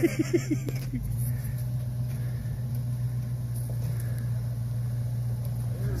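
Pickup truck engine idling steadily, a low even hum, with a short laugh in the first second.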